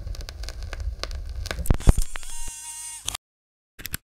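Noisy electronic outro of a dance remix: crackling static and sharp clicks over a low rumble, then a held electronic tone for about a second that cuts off abruptly, followed by a brief crackling burst near the end.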